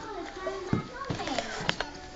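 A person laughing in short falling bursts, with a few sharp clicks.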